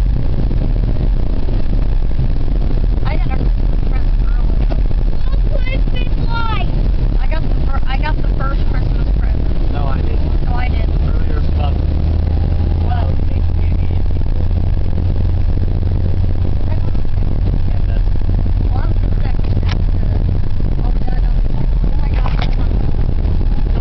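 Steady low road and engine rumble inside a moving car, with a deeper drone joining about halfway through. Faint voices talk in the background.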